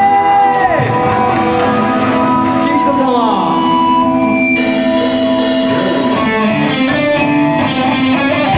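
Live rock band of electric guitars, bass and drums playing loud, with held guitar notes ringing out and sliding down in pitch as one song ends. The full band kicks into the next song about four and a half seconds in.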